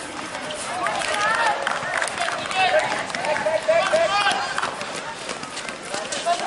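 High-pitched boys' voices shouting and calling over one another during a basketball game, with scattered short knocks in between.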